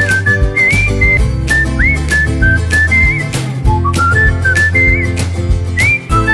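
Background music: a whistled melody over an instrumental accompaniment with a steady beat.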